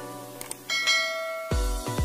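Click sound effect, then a bell ding that rings on over a light music bed. About a second and a half in, an electronic dance track with a heavy bass beat starts.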